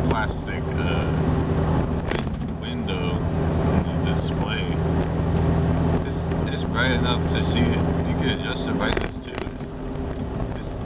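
Steady low engine drone and road noise inside the cabin of a moving 1998 Jeep Cherokee, with a man talking over it. The drone eases off near the end.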